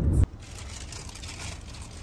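Golden retriever puppy chewing a piece of salted seaweed: faint crackly crunching over a low hum of car road noise inside the cabin. A louder rumble cuts off abruptly just after the start.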